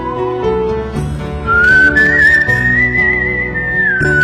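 Whistled melody over a soft instrumental backing, part of a whistling medley. One phrase ends just after the start; a new one comes in about one and a half seconds in, steps up and holds a high note with a gentle waver.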